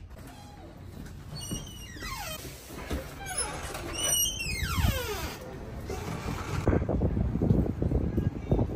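A door squeaking as it is opened: three or four high squeals, each sliding down in pitch. Near the end, wind rumbles on the microphone outdoors.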